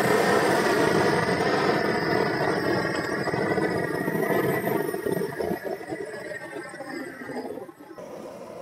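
Propane blowtorch burning with a loud, steady rush of flame that begins abruptly and tails off near the end, the torch used for scorching oak black.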